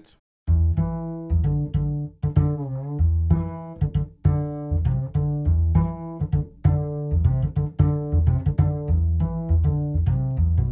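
UJAM Virtual Bassist Mellow's sampled acoustic upright bass played from a keyboard: a run of plucked notes at changing pitches, starting about half a second in. One note bends in pitch a little before three seconds in.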